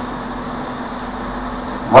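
A steady low background hum with no distinct events: room tone.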